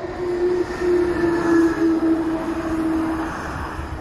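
Pilatus Railway electric rack railcar running on its steep cog track: a steady hum over a low rumble that swells from about half a second in and eases off near the end.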